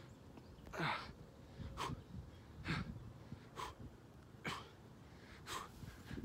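A man's hard, short exhales in a steady rhythm, one with each push-up, about one a second, six in all.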